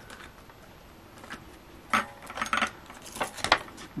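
A polymer £5 banknote and a clear plastic binder pocket being handled. A few short crinkles and clicks come about halfway through and again near the end, the sharpest near the end.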